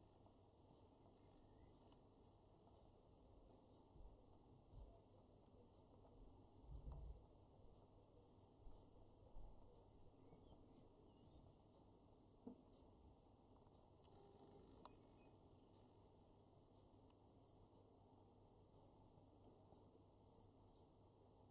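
Near silence: faint outdoor background with a few soft low thuds and a couple of faint clicks.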